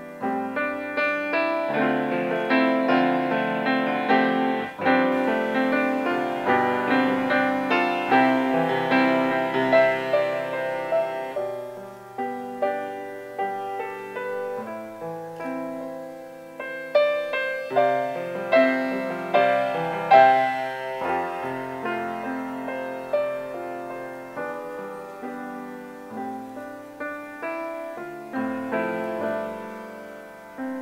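Piano playing live, a flowing passage of struck chords and melody notes that ring and fade, with a slight lull around the middle before the playing builds again.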